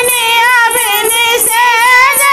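Women singing a Hindi folk bhajan to Ram, a melodic line that glides and bends between held notes.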